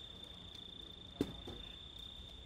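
A steady high-pitched tone runs throughout, with one sharp knock about a second in and a fainter one just after: tool strikes from firefighters working on the roof of a burning house.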